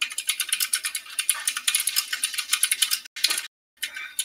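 Rapid typing on a computer keyboard: a dense run of key clicks, broken by two short pauses near the end.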